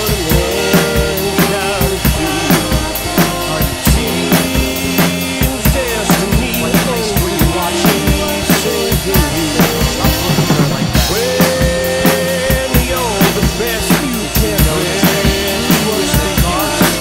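Acoustic drum kit played in a steady beat (snare, bass drum and Sabian cymbals) along with the song's instrumental backing music.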